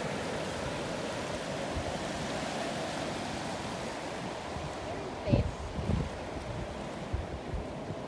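Steady rush of ocean surf mixed with wind on a sandy beach. About five and six seconds in, two brief low buffets of wind hit the microphone.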